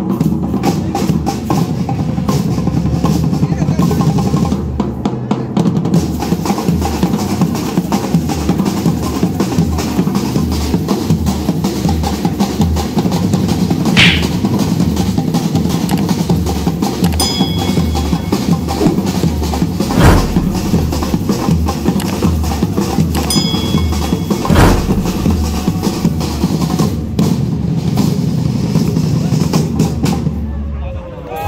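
A group of drummers beating large marching bass drums with padded mallets in a fast, steady rhythm that keeps up throughout, with a few louder accented hits in the second half.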